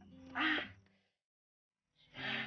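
A boy's short strained cry of pain about half a second in, cut off quickly, over the tail of soft background music.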